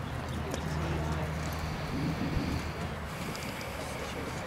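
A horse's hoofbeats on a grass arena, over distant voices and a steady low hum.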